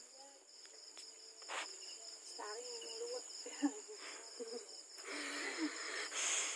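Crickets chirping in a rapid, even, high-pitched pulse that runs on steadily. A sharp click comes about three and a half seconds in.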